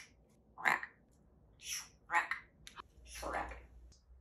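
African grey parrot imitating the word "Shrek" about three times, each a hiss followed by a short voiced syllable.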